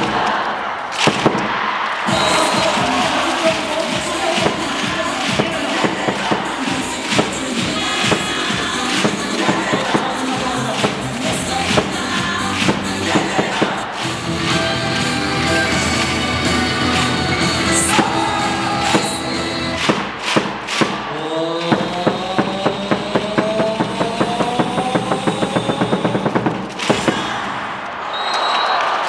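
Upbeat dance music with a steady beat. Near the end it builds up in a climbing sweep over fast repeated hits.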